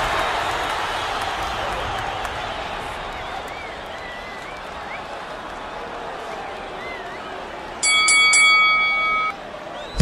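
Crowd noise slowly fading, then a boxing ring bell struck three times in quick succession near the end, ringing on for about a second and a half: the bell that starts the round.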